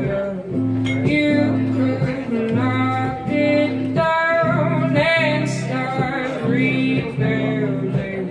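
A woman singing to her own acoustic guitar in a live solo performance, the chords played in a steady rhythm under a sung melody that wavers in pitch on held notes.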